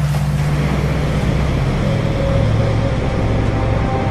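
Sound effect of rushing, splashing water over a low held music drone, with higher musical tones coming back in over the second half.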